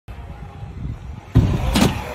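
Stunt scooter wheels rolling on a concrete skatepark ramp. About a second and a half in, a sudden loud clatter and scrape follows.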